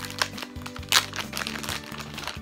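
Plastic squishy packaging crinkling and crackling as a foam squishy cake is worked out of the bag, with one sharp crackle about a second in, over background music.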